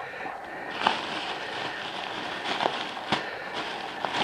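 Plastic carrier bags in a cardboard parcel box rustling and crinkling as they are handled, with a few sharp crackles.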